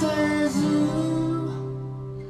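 Live acoustic guitar chord ringing with a man's sustained sung note, both slowly fading toward the end.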